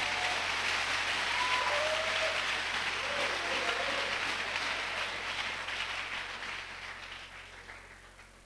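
Large congregation applauding together, with a few voices calling out over the clapping; the applause slowly dies away toward the end.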